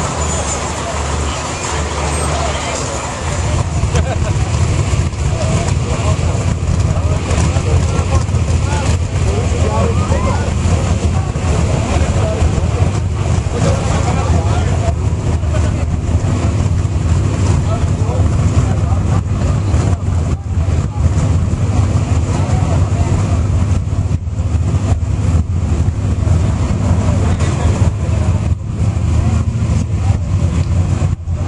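Off-road race truck engine running at idle, a loud, steady low rumble that swells up about three seconds in, over crowd chatter.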